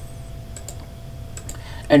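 A few soft clicks from a computer mouse and keyboard, in two close pairs about a second apart, over a faint steady electrical hum.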